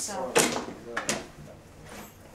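Two sharp clicks or knocks, about half a second apart, typical of a door and its latch being handled.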